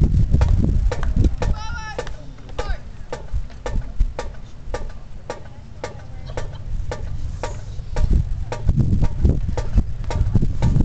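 Murmur of spectators talking in the stands, louder near the start and end, with a steady sharp click about twice a second: a marching band's drum stick clicks keeping time as the band files into position.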